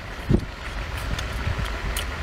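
Steady low rumble of wind on the microphone, with a brief soft thump about a third of a second in and a few faint clicks.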